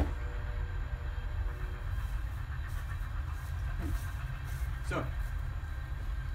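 A single sharp click as a wrist-mounted Pyro Mini launcher fires a ball of flash paper, over a steady low rumble.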